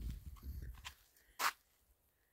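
Low rumble and rustling on a handheld phone microphone, fading out after about a second, then one short breathy burst about one and a half seconds in.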